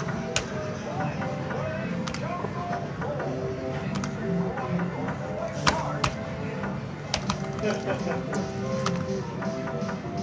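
Fruit machine in play: short electronic bleeps and jingle tones over arcade music and background chatter, cut through by sharp clicks and clunks from its buttons and reels, the loudest about halfway through.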